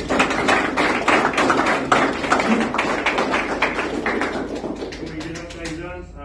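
A roomful of people applauding: many hands clapping together, starting suddenly and thinning out near the end.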